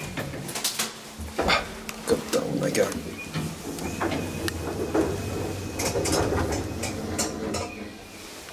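Hydraulic elevator car in motion: a steady low hum from about a second and a half in, with scattered clicks and knocks and a faint high whine in the second half.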